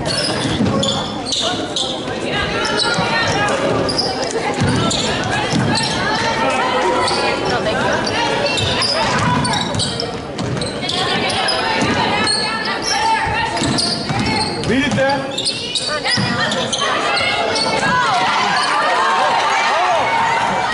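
Live basketball game sound in a gym: a basketball dribbling on the hardwood floor, sneakers squeaking, and indistinct voices of players and spectators echoing around the hall.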